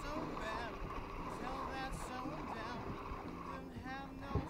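Spinning reel being cranked while a fish is played on a bent rod, with faint, indistinct voices in the background.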